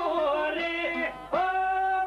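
Albanian folk song: a man singing long, held notes over plucked çifteli (two-string long-necked lutes). The held note breaks off just after a second in and a new one begins, held to the end.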